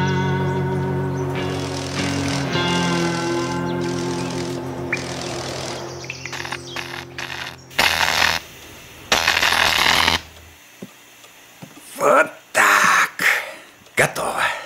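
Background music with sustained chords for the first several seconds, then a cartoon welding sound effect: two loud bursts of hissing crackle about eight and nine seconds in, with shorter bursts near the end.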